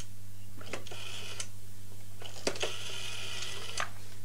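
Telephone sounds as a call is placed: two bursts of tone, each starting and ending with a click, the second about a second and a half long and roughly twice the length of the first.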